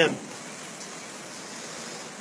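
Steady rain falling, an even, constant hiss.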